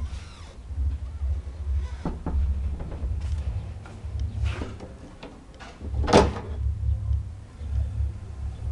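Loud bass-heavy music from a neighbour's sound system (pancadão), heard mostly as a pulsing deep bass that drops out briefly about five seconds in and comes back. There are scattered knocks from handling, with one sharp knock about six seconds in.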